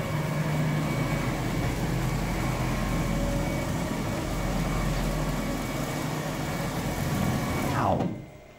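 CNC router axis drives (Nema 34 stepper motors with planetary gearboxes) whining steadily as the gantry traverses rapidly back to the zero point. The whine glides down in pitch as the machine slows and stops near the end.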